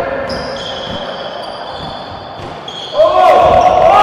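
Basketball dribbling on a gym floor, with the hall's echo. About three seconds in, loud shouting from players and spectators breaks out.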